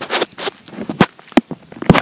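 Wood-chip mulch crunching and rustling in about five sharp, uneven crackles.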